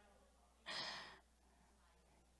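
A single short breath or sigh into a handheld microphone, a little after the start and lasting about half a second, with near silence around it.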